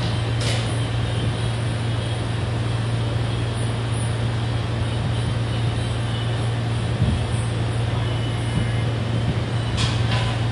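Steady background drone: a low hum under an even hiss of noise, with a short hiss near the start and a soft thump about seven seconds in.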